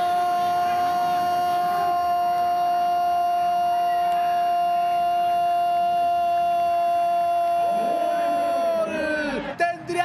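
A football commentator's long, unbroken 'gol' cry, held on one steady note for the whole stretch, that falls in pitch and breaks off about nine seconds in as he goes back to talking.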